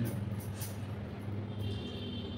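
A steady low hum runs throughout, with a few faint clicks in the first second.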